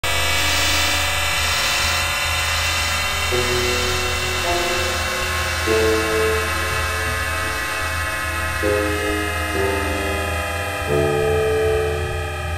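Synthesizer drone: a steady low hum under a dense, bright wash of held tones, with chords in the middle register changing to new notes every one to three seconds.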